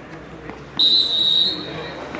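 Referee's whistle: one steady shrill blast of about a second, starting just under a second in, loudest at first and then tailing off, signalling play to restart.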